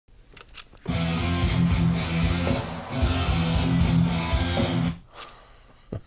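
Recorded guitar music played back over studio speakers, starting about a second in after a few faint clicks and cutting off abruptly just before five seconds.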